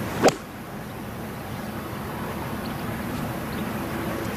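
A golf club striking a teed-up ball on a tee shot: one sharp crack about a quarter second in, with a brief ring after it. A steady outdoor background murmur follows.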